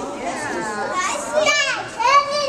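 Young children chattering and calling out together, with one loud high-pitched child's call near the end.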